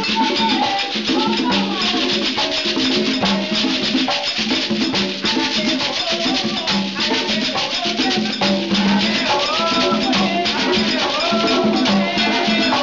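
Live Afro-Cuban ceremonial drumming: conga drums played by hand in a steady, fast, repeating rhythm, with a rattle shaken along and voices singing over the drums.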